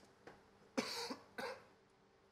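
A person coughing twice, two short harsh bursts about half a second apart, the first one louder.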